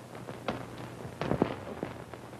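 A door pushed open and footsteps as people walk in: a handful of separate knocks and thuds, the loudest cluster a little past the middle, over a steady low hum.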